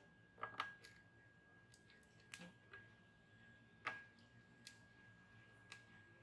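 Near silence with a faint steady high tone, broken by a handful of faint small clicks of hand tools against a circuit board while a capacitor is desoldered; the sharpest click comes about four seconds in.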